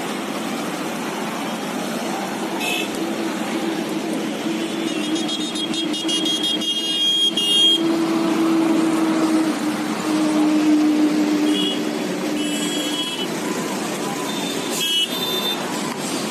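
A convoy of cars passing one after another at speed, with tyre and engine noise. Horns sound through the middle, including a long steady horn tone.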